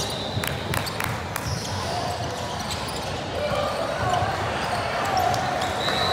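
A basketball bouncing on a hardwood gym floor, with several sharp knocks in the first second and a half, over voices of players and spectators echoing in the large hall.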